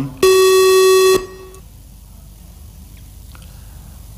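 One steady buzzing electronic tone, about a second long, from a parliament chamber's electronic voting system, signalling the vote. It is followed by quiet room tone with a couple of faint clicks.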